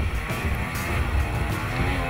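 Arctic Cat ProCross F800 two-stroke snowmobile engine running steadily at speed, mixed with background music.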